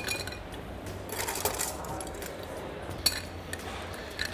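Ice cubes dropped into a glass mixing glass, clinking against the glass in a few separate bursts.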